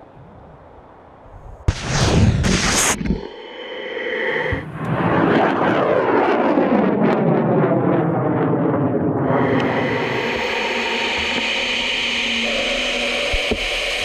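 Solid-propellant rocket motor igniting at liftoff: a sudden loud roar about two seconds in, then a sustained rumbling roar whose tone sweeps downward in repeated curving bands as the rocket climbs away, with more hiss in the last few seconds.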